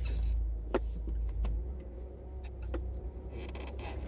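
Inside a car's cabin: a low, steady engine and road rumble as the car drives slowly, with a few scattered light clicks.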